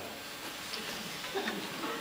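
Quiet room tone with a brief faint voice a little over halfway through, and a few soft ticks.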